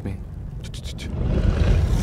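Deep, steady rumble of cinematic trailer sound design, with a few faint clicks about halfway through, then a hissing swell that rises in loudness toward the end.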